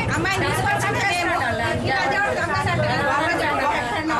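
Several women talking loudly over one another, their voices overlapping without a break.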